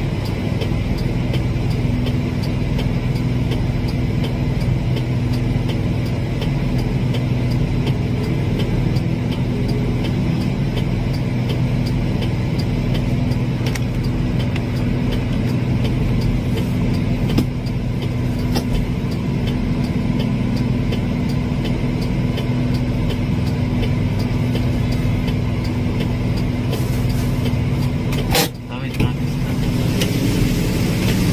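Vehicle engine idling, a steady low hum, with a short drop in level near the end.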